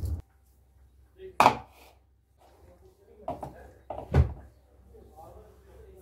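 A boiled egg being peeled by hand over a wooden cutting board: eggshell crackling and a few sharp knocks on the wood, the loudest about one and a half seconds in.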